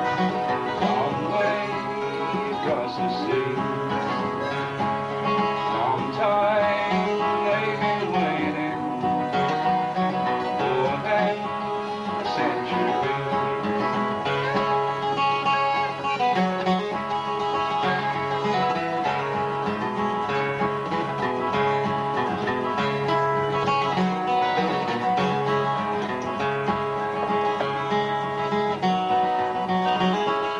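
Steel-string acoustic guitar played live, a continuous run of chords over changing bass notes accompanying a folk ballad.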